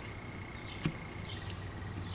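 Quiet room tone: a steady low hum and hiss with one faint short tap near the middle.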